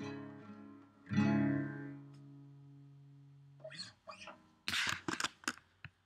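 Acoustic guitar's final chord is strummed about a second in and rings out, fading away. Near the end come a few short rustling noises.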